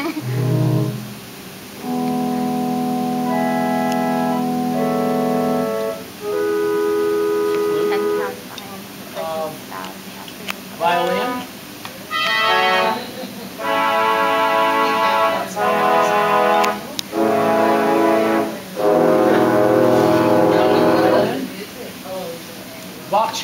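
Theatre pipe organ playing a series of held chords and short phrases with brief gaps between them, as different ranks of pipes are tried in turn. The last chords, near the end, are the loudest and fullest.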